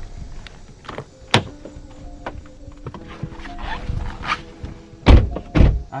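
Clicks and knocks of someone climbing into a Porsche sports car, ending in two heavy low thumps a little after five seconds in as the car door is shut. Soft background music runs underneath.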